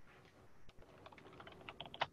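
Faint typing on a computer keyboard: a run of light key clicks in the second half, coming closer together toward the end.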